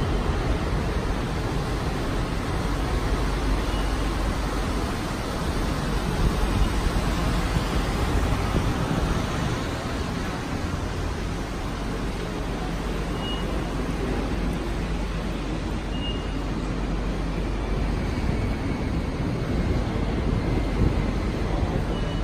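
Steady background rumble and hiss of a large indoor transit concourse, picked up by a hand-held phone microphone while walking, with a few faint short beeps, some of them as the fare gates are passed.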